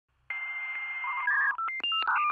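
Electronic telephone-style dialing tones: after a moment of silence, one held tone lasting about a second, then a quick run of short beeps at changing pitches.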